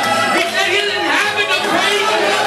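A preacher's voice through a microphone and PA, loud and excited, over music, with congregation voices mixed in.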